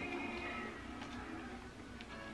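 Television sound with music playing faintly in the background, getting gradually quieter as its volume is turned down.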